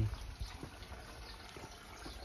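Faint, steady running water: an even background hiss of water in the garden pond setup, with a few light handling ticks.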